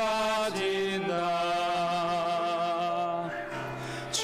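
Men's voices singing a hymn in long, held notes with a slight vibrato, changing note about half a second in and again about a second in.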